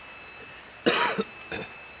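A man coughs once, sharply, about a second in.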